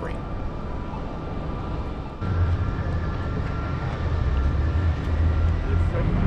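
Car engine and road noise from the filming car: a steady low hum while stopped, then about two seconds in it turns louder with a deeper drone and a faint steady whine as the car pulls away from the light.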